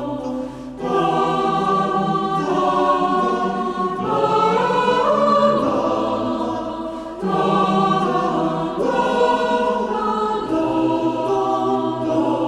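Choir singing slow, sustained chords, the harmony shifting every one and a half to three seconds, with a short drop in level just before one second in.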